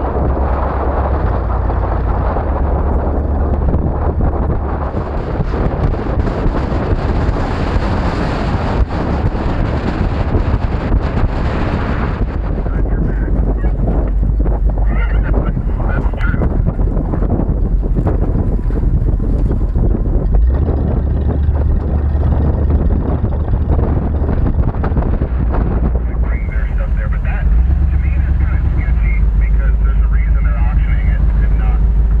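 Wind buffeting an action camera mounted on the outside of a 1977 Jeep Cherokee, over the running of the Jeep as it drives a rough dirt track. There is a steady low rumble throughout.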